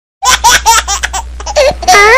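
A baby laughing in a quick run of short giggles, about five a second, that trail off after a second.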